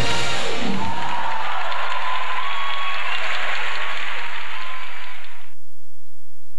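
Audience applauding as the stage music ends, a dense steady clapping that stops abruptly about five and a half seconds in.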